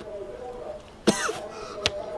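A man coughs once, suddenly, about a second in, followed by a short click near the end.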